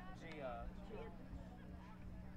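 Faint, distant high voices calling out, with a steady low hum underneath.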